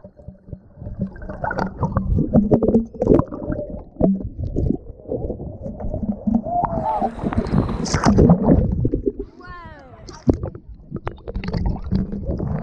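Surf sloshing and churning around a waterproof action camera held at the waterline, heard as a muffled, rumbling gurgle with a louder rush of water about eight seconds in. Voices cry out briefly over it.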